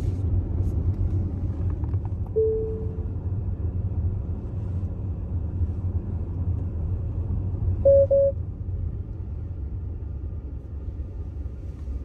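Tyre and road rumble inside a Tesla Model X's cabin as it rolls slowly through town, easing slightly near the end. A short chime sounds about two and a half seconds in, and a quick double beep comes about eight seconds in.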